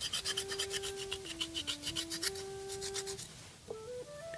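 Hand file rasping back and forth along the edge of a freshly cast pewter spoon, taking off the casting flashing in quick, even strokes that stop a little after three seconds.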